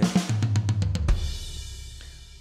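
Sampled rock drum kit (GetGood Drums One Kit Wonder Classic Rock) playing a quick tom fill, then a kick and crash cymbal about a second in that ring out and fade. The fill is played entirely on rack tom one, because the converted MIDI sent rack tom two's notes to rack tom one.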